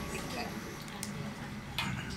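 Metal spatula stirring a large wok of biryani, with two sharp clicks against the pan, about a second in and near the end, over a steady low rumble and faint talk.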